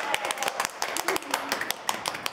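A small group of people clapping their hands, the claps irregular and uneven, with a little laughter at the start.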